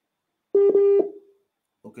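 A single steady electronic beep, about half a second long, that starts sharply and fades out: a call-connection tone on a poor network.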